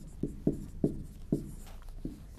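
Marker pen writing on a whiteboard: a quick series of short strokes, about five in two seconds.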